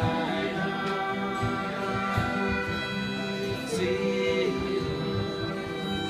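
Acoustic guitar and fiddle playing a slow song live, with long held notes and a wavering held note about four seconds in.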